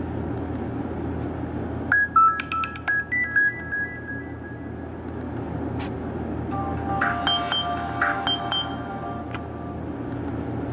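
Nokia 5228 ringtones played through a Nokia 130's small loudspeaker: a short run of bright electronic melody notes about two seconds in, then a second tune of quick notes from about six and a half seconds in, as the player steps to the next track.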